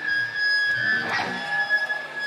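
Live heavy metal concert between songs: a steady high ringing tone from the band's amplifiers holds, while a short shout or whoop from the crowd comes about a second in.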